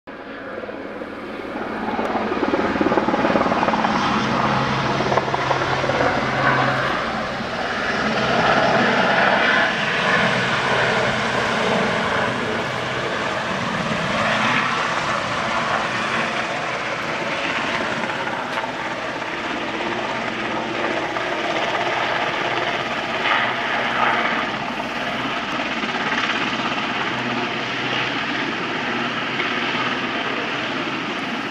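Royal Navy Westland Sea King rescue helicopter's rotors and twin turbine engines running as it flies in to land, growing louder over the first two seconds and then holding steady with a low hum under the rotor noise.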